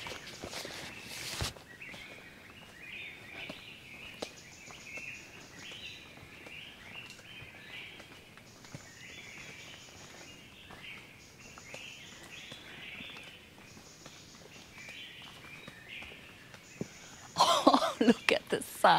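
Birds calling in a forest, many short chirps of varying pitch one after another, with a high steady buzz that comes and goes in stretches of a second or two.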